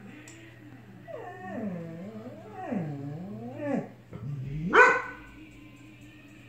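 Golden retriever whining in long, wavering cries that slide down and back up in pitch, then one loud bark near the end: a dog uneasy about something in the room it is watching.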